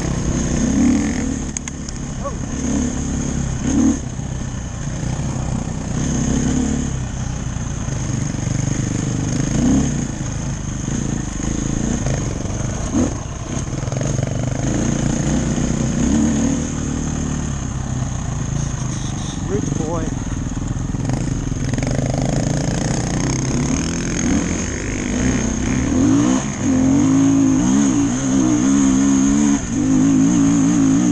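Dirt bike engine running on a trail ride, its revs rising and falling as the throttle is worked, with a steady high whine over it. In the last few seconds it holds higher, steadier revs.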